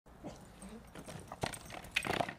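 A dog at play during a game of fetch: faint movement sounds with a couple of sharp light knocks in the second half.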